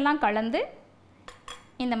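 A metal spoon clinking twice against a small glass dish, two quick ringing taps about a second and a half in.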